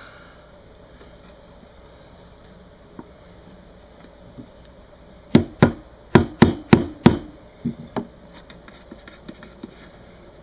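Rubber mallet knocking on a wooden beehive body: six quick, solid knocks in under two seconds, then two lighter taps. The knocks settle the box level and flush in its assembly jig.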